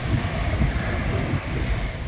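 Wind buffeting the microphone, a steady rushing noise with a flickering low rumble, over small waves washing onto a sandy beach.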